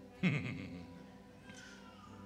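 A man's short, quavering giggle in a put-on voice. It starts suddenly, falls in pitch and fades within about half a second, over a faint held keyboard pad.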